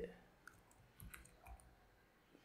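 Faint keystrokes on a computer keyboard: a few scattered clicks as text is typed.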